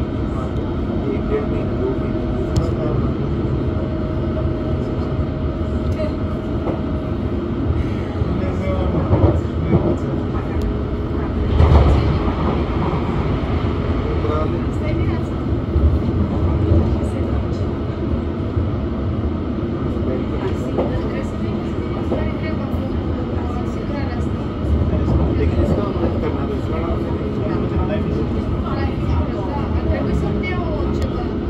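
Interior of a London Underground District line train running at speed: steady rumble of wheels on rail, with a thin steady whine over the first several seconds and heavier jolts about nine and twelve seconds in.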